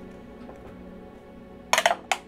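A small die rolled onto the table, clattering in a quick burst of hits near the end, over steady soft background music.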